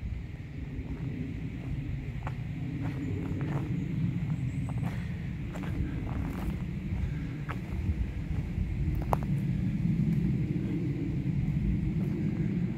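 Steady low outdoor rumble with scattered light clicks of footsteps and twigs on a woodland dirt path.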